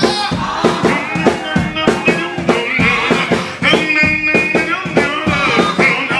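A man singing a worship song live into a handheld microphone over a band, with one long held note near the middle.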